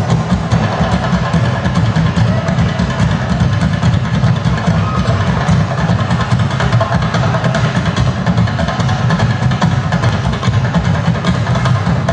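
Traditional Minangkabau music accompanying the Indang dance, a dense, steady, fast drum rhythm with nothing breaking it.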